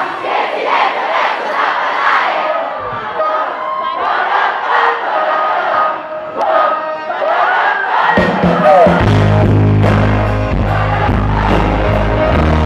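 A large concert crowd cheering and singing together while the band holds back. About eight seconds in, the band's bass and drums come back in under the crowd.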